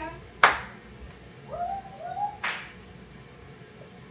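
Two sharp smacks about two seconds apart, with short high-pitched cheering voice sounds between them.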